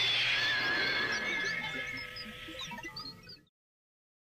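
A soundtrack sound effect: a rush of noise with a few warbling high tones, dying away steadily and cutting to silence about three and a half seconds in.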